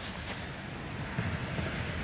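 Steady outdoor background: a low, even rumble with a thin, constant high-pitched whine running over it.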